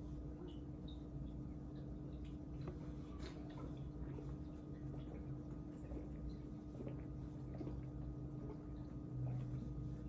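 A man gulping beer from a glass in long swallows: faint wet swallowing sounds and small clicks over a steady low hum.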